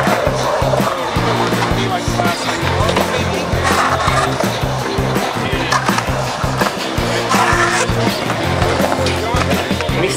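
Skateboard wheels rolling and carving on the concrete walls of a full pipe, with music playing throughout.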